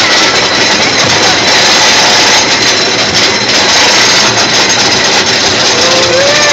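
Steel roller coaster train climbing its lift hill: a loud, steady mechanical noise from the train and lift.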